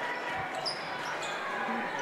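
Gymnasium ambience of a crowd murmuring in a high school gym, with a single basketball bounce about half a second in.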